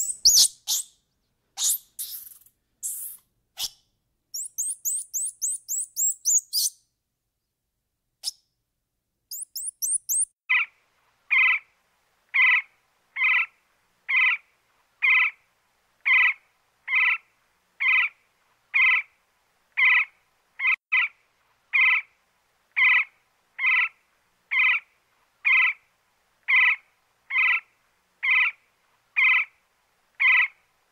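High-pitched chirps and twitters from a squirrel monkey in short runs for about ten seconds. After a brief pause, a woodpecker calls over and over, one short call about every second.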